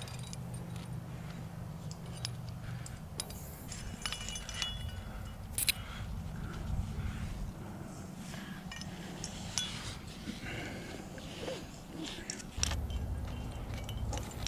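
Climbing hardware (carabiners and cams on a harness rack) jangling and clinking in scattered, irregular bursts as gear is handled and clipped, over a low steady rumble.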